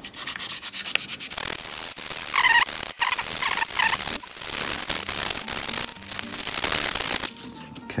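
240-grit sandpaper rubbed by hand in quick back-and-forth strokes across a small metal rear-view-mirror mounting button, scuffing its surface so that glue will bond. A few short squeaks come in the middle.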